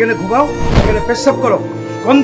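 A single dull thud about three-quarters of a second in, over sustained background music and a man shouting.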